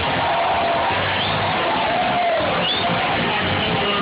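A live band playing on stage, heard from within the audience, with crowd cheering and a couple of short high whoops over the music.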